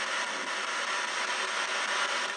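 Ghost box radio static: a steady hiss of white noise as the radio sweeps through stations, with no voice breaking through.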